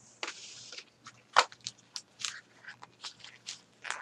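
Handling noise close to the microphone: a brief rustle near the start, then a run of irregular small clicks and crackles as things are picked up and moved.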